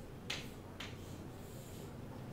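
Chalk on a chalkboard: two short, sharp chalk strokes or taps about a third of a second and just under a second in, then a fainter scratchy stroke near the end.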